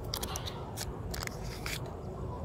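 Crinkling and crackling of a sheet of self-adhesive waterproofing tape and its paper release liner being handled: several sharp crackles in quick succession over a steady low rumble.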